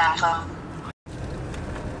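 A voice speaking Dutch trails off in the first half-second. A steady noise without words follows, broken by a brief dropout about a second in.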